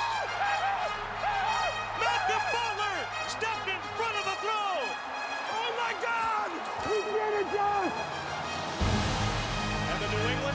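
Excited yelling and whooping from several men celebrating over background music, with short rising-and-falling shouts overlapping one another. A deep, loud swell of music comes in near the end.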